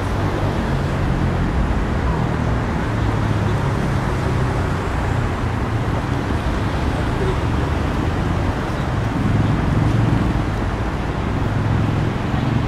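Steady city road traffic noise: a continuous low rumble of car engines and tyres on the street.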